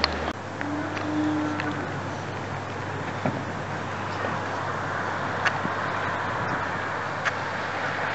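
Steady outdoor background noise on an open deck: an even rushing sound with a low hum underneath and a few faint clicks.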